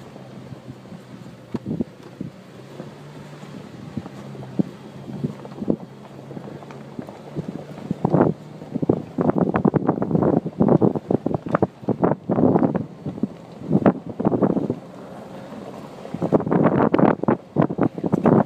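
Nissan Xterra SUV crawling over a rough, rocky dirt road, its engine a low steady hum. From about eight seconds in there are repeated loud bursts of wind buffeting and jolting on the microphone, easing off briefly and then returning near the end.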